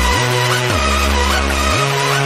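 Hardstyle electronic dance music with no vocals: a deep synth bass note slides up in pitch and back down, twice, under a wavering higher synth line.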